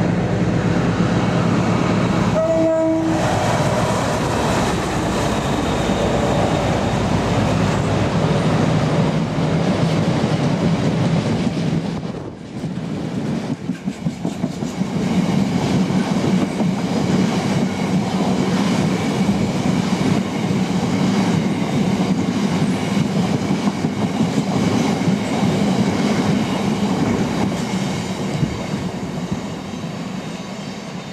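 Class 60 diesel locomotive hauling a loaded train of tank wagons: a short two-tone horn, high note then low, about two and a half seconds in, over the steady sound of the locomotive's diesel engine. The tank wagons then run past with clickety-clack of wheels over rail joints, fading a little near the end.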